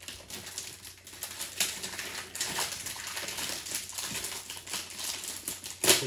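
Rapid, irregular clicking and scratching from hands working at the plastic-wrapped cardboard box, with one sharp knock just before the end.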